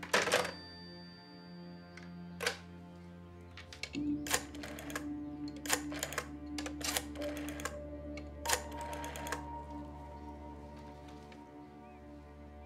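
A telephone handset clacks down onto the cradle of a black rotary desk telephone, with another click a couple of seconds later, then the rotary dial is worked: a run of clicks from about four seconds in until past nine seconds. Soft background music with held notes plays underneath.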